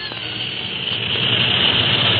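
Radio-drama sound effect of an airliner's engines in flight: a steady droning noise with a low hum that grows louder as the music bridge ends.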